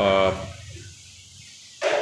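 A man's voice holds a short filler syllable at the start, then pauses over quiet room tone. A brief breath comes near the end.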